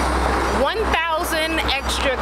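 Road traffic noise and wind rumbling on the microphone. A woman's voice starts talking about half a second in.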